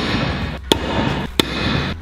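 Pickaxe striking a brick wall twice, two sharp impacts about two-thirds of a second apart.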